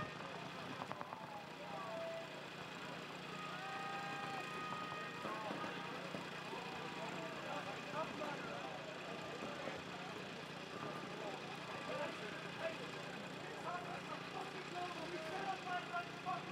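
Faint outdoor field ambience: distant, indistinct voices over a steady low hum.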